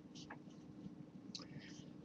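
Near silence: room tone with a faint steady hum, and two faint short breath sounds from the man at the microphone.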